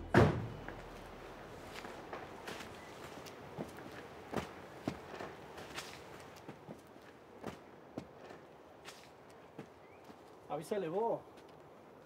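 A loud thud at the start, then a man's footsteps on dry dirt, single scattered steps up to a second and a half apart. Near the end there is a brief spoken phrase from a man.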